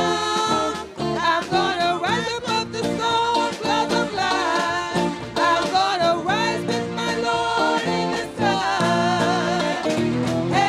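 Worship singers and congregation singing a gospel song together over live band accompaniment.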